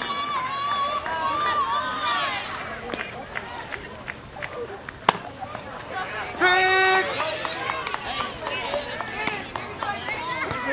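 Spectators and players calling out at a youth baseball game. About five seconds in there is one sharp pop, and soon after a loud held high call lasting about half a second.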